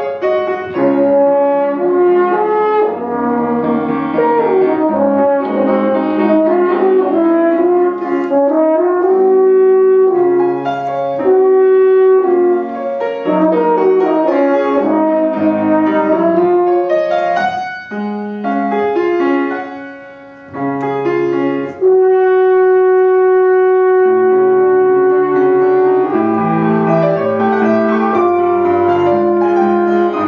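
Double French horn playing a classical solo with grand piano accompaniment. The music starts right at the beginning, grows quieter for a moment a little past the middle, then the horn holds one long note before the melody moves on.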